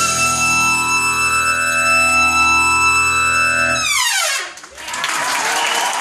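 A live band's brass section, trumpets, trombones and saxophones, holds a loud final chord for about four seconds, then the whole chord drops away in a steep downward fall-off. Audience applause follows near the end.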